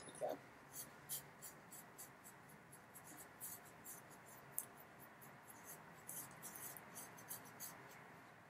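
Faint, scratchy strokes of small paintbrushes working paint onto a statue, about three short strokes a second at an uneven pace.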